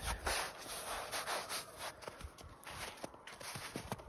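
Boots stepping through wet, rain-softened snow: quiet crunching footsteps.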